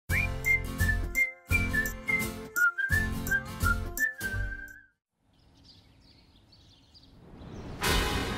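Show theme jingle: a whistled tune of short stepping notes over a heavy beat, stopping about five seconds in. A faint sound swells up after it toward the end.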